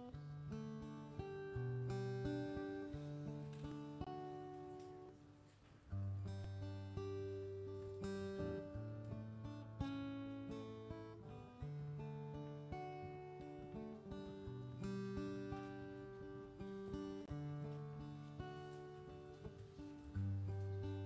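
Solo acoustic guitar played slowly and without singing, chords strummed and let ring, changing every second or two. The sound dips briefly about five seconds in before a new chord comes in.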